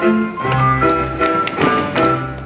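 Live Moravian folk band of fiddles and cimbalom, with a bass line underneath, playing a dance tune, with a steady beat of sharp taps about three a second.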